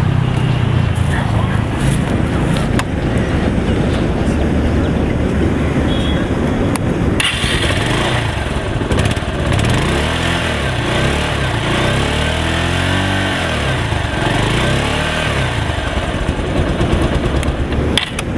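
Bajaj Pulsar 150's single-cylinder engine running at idle. From about seven seconds in it is revved several times, the pitch rising and falling with each blip of the throttle.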